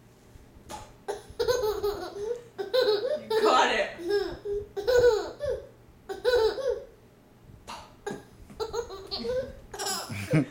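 A toddler laughing hard in repeated bursts, with short pauses between them.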